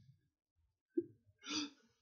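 A man's brief laugh: a short voiced burst about a second in, then a louder breathy one half a second later.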